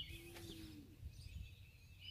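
Faint bird calls in a near-quiet outdoor pause: one low held note lasting under a second near the start and a few faint high chirps, over a low background rumble.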